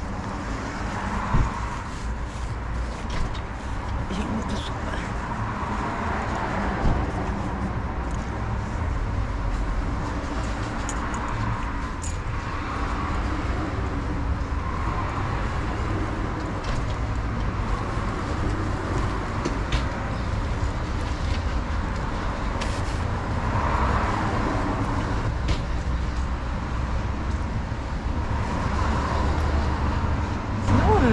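Steady road traffic noise, with vehicles swelling up and fading away as they pass every few seconds, under a low rumble, plus a few light clicks and rustles close by.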